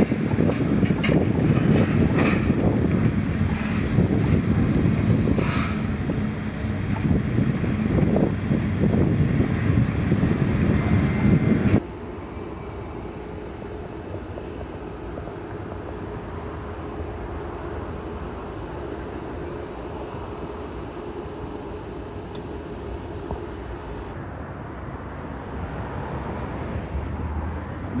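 Wind buffeting the microphone over a steadily running machine engine, with a few sharp knocks. About twelve seconds in, the sound drops suddenly to a quieter, steady hum.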